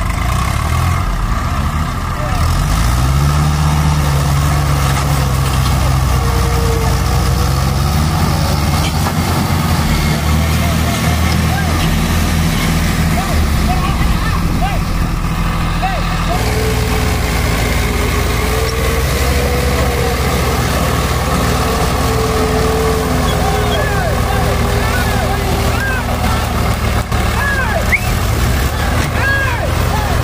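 Diesel tractor engines of a Swaraj 744 FE and a Mahindra 575 DI running hard in the field, the engine note rising about two to three seconds in and then holding steady; the sound changes abruptly about halfway through.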